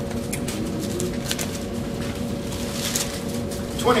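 Thin Bible pages being turned: several short, soft paper rustles over a steady hum.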